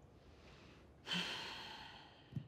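A woman's sigh: one long breathy exhale that starts about a second in and fades away.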